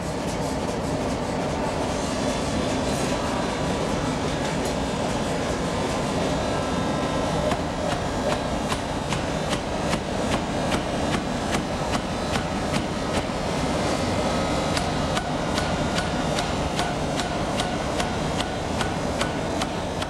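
A power forging hammer working a red-hot steel bar. Steady mechanical clatter gives way, from about seven seconds in, to an even, rapid run of sharp hammer blows.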